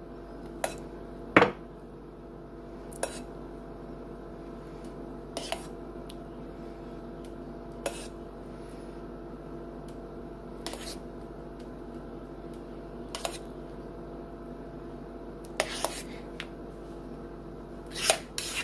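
A metal spoon clinking now and then against a mixing bowl and a glass baking dish as dollops of cream cheese mixture are spooned out: about ten scattered clinks, the sharpest about one and a half seconds in. A steady low hum runs underneath.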